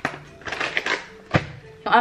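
A short rustle and two sharp clicks from hands handling things while tidying up toys, with speech starting again near the end.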